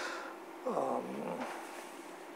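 A man's voice making a short drawn-out hum or 'uh', its pitch dipping and then rising, over a steady faint room hum.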